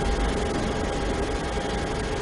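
Steady room background noise: an even hiss with a low hum and a faint steady tone, typical of ventilation or recording noise in a lecture room.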